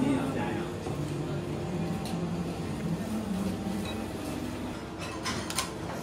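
Voices talking in the background, with a brief pour of water from a small metal kettle onto a dish at the very start, and a few sharp clicks about five seconds in.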